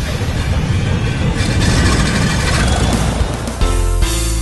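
Title sting: a loud, dense rushing noise with music under it, giving way about three and a half seconds in to music with steady held notes.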